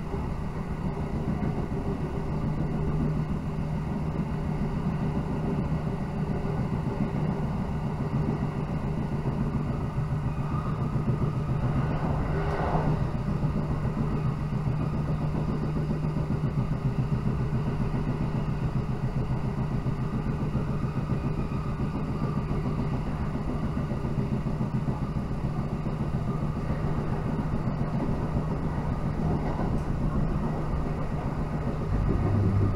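Running noise of an electric train heard from inside the passenger car: a steady rumble of wheels on rail under a constant low drone, with a brief higher-pitched swell about twelve seconds in.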